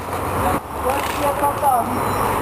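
Several people's voices calling out and talking in short bursts over a steady low background rumble.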